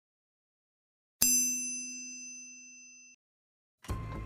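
A single bright, bell-like ding sound effect, struck about a second in and ringing down over about two seconds before cutting off suddenly. Music starts with a thump just at the end.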